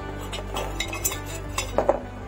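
Several light metallic clinks and taps on steel, the loudest few close together near the end, over steady background music.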